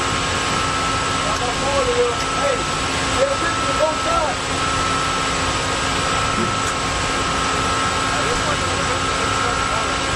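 Steady shipboard machinery drone on a destroyer's deck, holding a few constant tones throughout. Faint shouts from the crew come through between about one and a half and four and a half seconds in.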